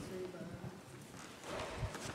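Footsteps and shuffling near a lectern microphone, with a low thump a little before the end.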